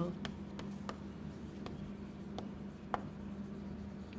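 Chalk writing on a chalkboard: faint, irregular taps and scratches as letters are written, one sharper tap about three seconds in. A steady low hum lies underneath.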